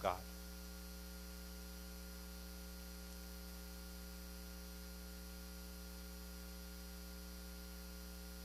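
Steady electrical mains hum: a low, constant buzz with a ladder of higher overtones, and no music or singing.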